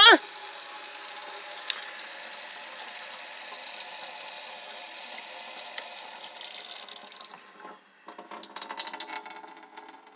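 Water running from a camper van's faucet into a stainless steel sink, fed by the on-board water pump that a newly fitted switch has just brought back on. The steady flow fades out about seven seconds in, leaving a thin trickle and a few scattered small ticks.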